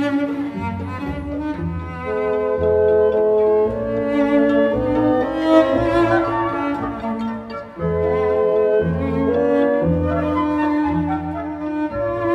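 A small chamber orchestra playing classical music: a solo cello carrying the melody over bowed strings and low bass notes, with a clarinet and a flute. About two-thirds of the way through the music briefly drops away between phrases, then comes back.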